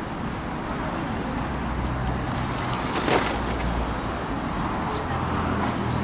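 Busy city-street traffic noise, a steady hum of passing vehicles, with a single sharp knock about halfway through.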